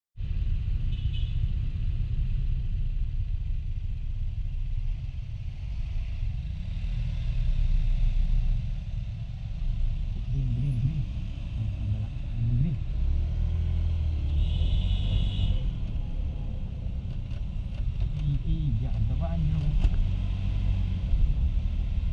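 Kymco Like 125 scooter being ridden, heard from the rider's seat: a steady low rumble of the small engine and road and wind noise, rising and falling in pitch at times as the throttle changes, with other traffic around it.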